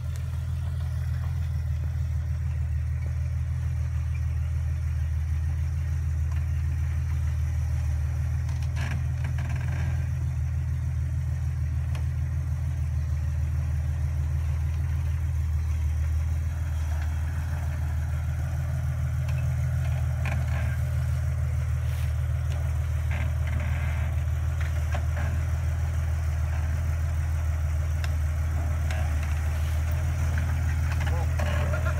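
Lifted Jeep Wrangler's engine running at a low, steady idle as it crawls slowly into a dug-out frame-twister pit. Scattered clicks and knocks from the tyres on rock and dirt come in about nine seconds in and again through the second half.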